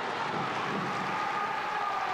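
Steady ambience of an outdoor football ground picked up by the pitch-side broadcast microphones: an even rushing noise with a faint steady tone in it and no distinct kicks or shouts.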